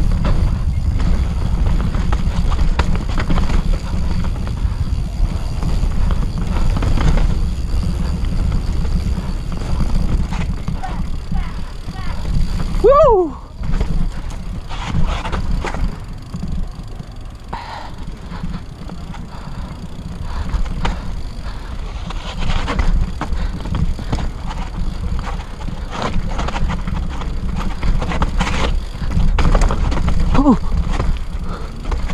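Yeti SB6 mountain bike riding down a dirt singletrack: wind buffeting the camera microphone with a heavy low rumble, tyres on dirt, and the chain and frame rattling and knocking over bumps. A brief falling squeal about halfway through.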